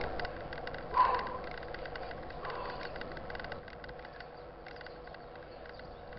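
Mountain bike riding on asphalt, heard from the rider's own bike: steady rolling and wind noise with light irregular ticks and rattles, and a short louder sound about a second in.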